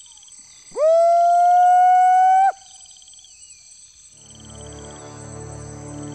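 A man's long howl imitating a Sasquatch call: it sweeps steeply up to one high held note for nearly two seconds, then cuts off abruptly. Insects trill faintly in the background, and low, eerie droning music comes in about four seconds in.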